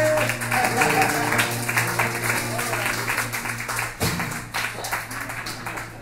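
Acoustic guitar strummed through the closing chords of a song, the notes ringing and dying away toward the end.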